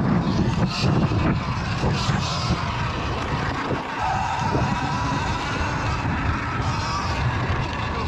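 Sur-Ron electric dirt bike ridden at speed over a dirt track: a steady electric motor whine over tyre and gravel noise, with wind buffeting the helmet microphone.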